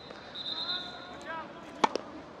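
Tennis racket striking the ball on a flat serve, a single sharp pop near the end.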